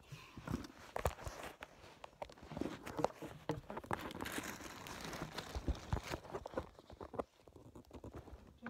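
Hurried movement on a carpeted floor: irregular thumps, knocks and rustling as someone kneels and shuffles about, with handling noise from the phone held close to the floor.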